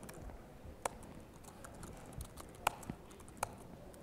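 Laptop keyboard keystrokes: a few sharp, scattered key clicks about a second apart, faint over room tone, as a command is typed to open a file.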